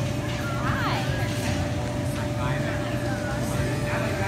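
High children's voices calling and chattering, loudest about a second in, over a steady low rumble and a constant hum.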